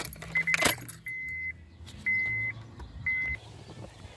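Car keys jangling and the ignition switch clicking as the key of a 2004 Honda Accord is turned to accessory. The dashboard warning chime beeps with it: a quick run of short beeps near the start, then three longer beeps about a second apart.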